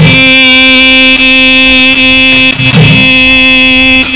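Carnatic dance accompaniment between sung lines: a steady held drone note under a few sharp percussion strokes, with a low drum thud a little before the end.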